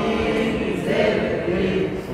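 A group of voices chanting Arabic letter sounds with their vowel marks (harakat) together in unison: a class repeating a Quran-reading drill. The chant is drawn out and continuous.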